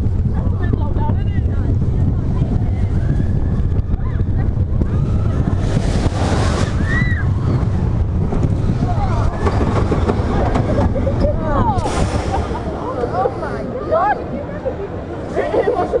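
Wind buffeting the microphone over the rumble of The Big One's steel roller-coaster train running on its track, with riders' voices shouting over it from about halfway through. The rush eases in the last few seconds as the train slows.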